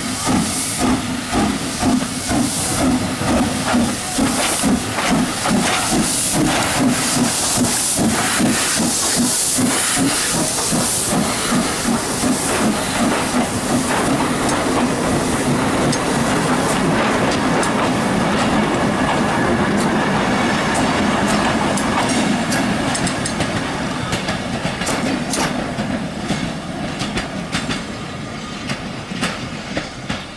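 Ex-GNR V class 4-4-0 three-cylinder compound steam locomotive No.85 Merlin pulling away with a train: regular exhaust beats over hissing steam. After that the coaches roll past with wheels clicking over the rail joints, and the sound fades as the train draws away near the end.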